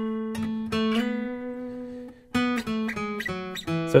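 Steel-string acoustic guitar playing a run of single picked notes up a major-scale pattern, one note left ringing under the others, with a brief break about two seconds in before the notes go on.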